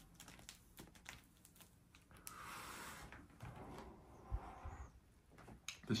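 Faint breathing of someone smoking a joint: a breathy draw of about a second starting about two seconds in, then a softer, lower breath, among small clicks and rustles.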